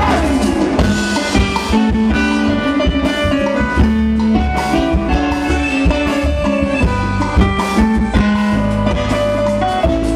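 Live vallenato music: a button accordion plays a running melody over bass and percussion.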